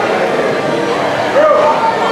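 Background chatter of several voices mixed together in a busy indoor space, with one voice briefly standing out about one and a half seconds in.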